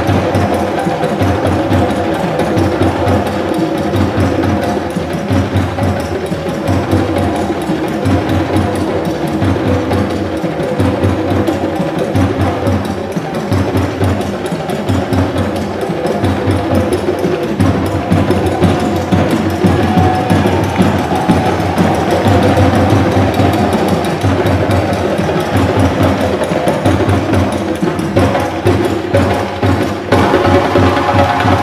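An ensemble of djembe hand drums played together in a fast, continuous rhythm.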